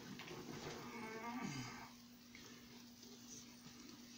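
A faint, wordless low vocal sound from a person, like a strained hum or groan that falls in pitch about a second and a half in, while a stack of books is lifted and handled. A faint steady hum runs underneath.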